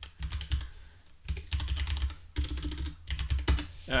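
Typing on a computer keyboard: a quick, irregular run of keystrokes as a line of code is entered.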